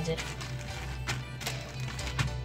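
Background music with a steady low hum, and a few short clicks about a second in.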